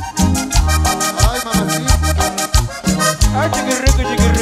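A live band playing an instrumental passage without singing: bass and percussion keep a steady beat under a lead melody that slides up in pitch twice.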